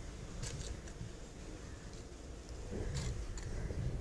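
Cardboard matchboxes being set down and pushed together on a table by hand: a few faint light taps, one about half a second in and a couple around three seconds in, over a low rumble.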